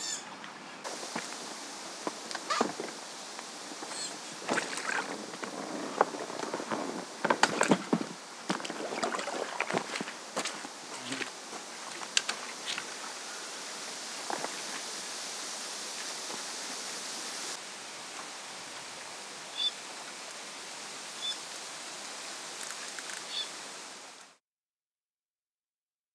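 An inflatable pontoon boat and gear being handled at the water's edge: a run of knocks and splashes in the first half, over a steady outdoor hiss. A few short high chirps come near the end.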